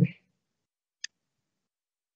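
The tail of a spoken "um", then silence broken by a single short click about a second in.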